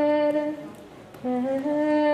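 A woman singing unaccompanied into a microphone, in long held notes. The first note ends about half a second in. After a short pause a new note starts a little lower, steps up and is held on.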